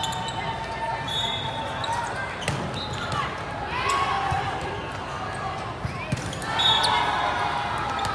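Indoor volleyball rally in a large hall: sneakers squeaking on the court, a couple of sharp hits of the ball, and a background murmur of players and spectators.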